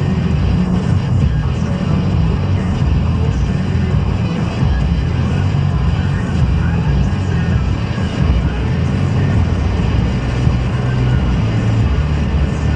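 Steady low rumble of a car driving, its road and engine noise heard from inside the cabin.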